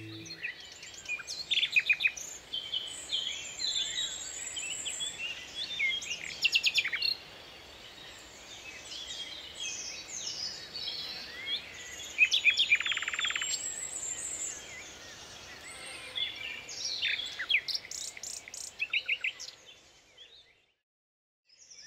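Birdsong: birds chirping and whistling, with short rising and falling notes and several rapid trills, the loudest a little over twelve seconds in.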